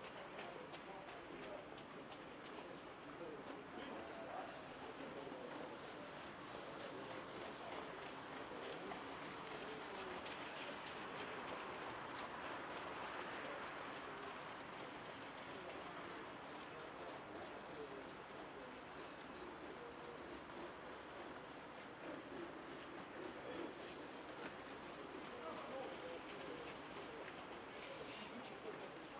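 Faint outdoor background: indistinct distant voices over a steady hiss, slightly louder around the middle.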